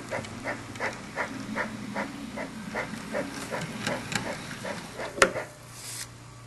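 Toy model train engine running along the track toward the station: a steady rhythm of chuffs, about three a second, over a low motor hum, with one sharp click about five seconds in.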